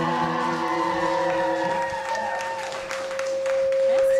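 A live rock band's final chord rings out and dies away while the bar audience claps and cheers. One high guitar note is left holding and grows louder near the end.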